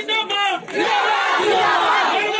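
A large crowd shouting together, many voices overlapping, with a brief lull about half a second in.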